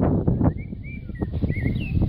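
A songbird singing a run of short warbled chirps, over a low rumble that is loud at first and drops away after about half a second.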